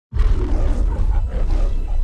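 Lion's roar of the MGM studio logo, starting suddenly and fading out just before the two-second mark, over a deep rumble.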